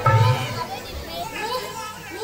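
Instrumental music cuts off about half a second in, followed by a mix of high-pitched voices calling and chattering.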